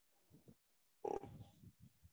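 Mostly near silence, with a brief faint murmur of a person's voice about a second in, a short low grunt-like vocal sound.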